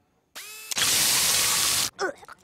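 Cartoon spray sound effect from a robot's mouth nozzle: a short mechanical whir, then a loud hiss of spray lasting about a second that cuts off sharply.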